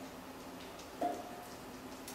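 Quiet room tone: a faint, steady low hum, with a brief faint tone about a second in.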